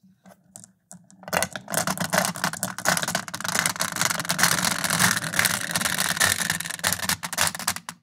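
Steel marbles rolling off a wooden feed ramp and clattering into a 3D-printed plastic marble divider: a dense, continuous rattle of ball-on-ball clicks that starts about a second in and stops just before the end.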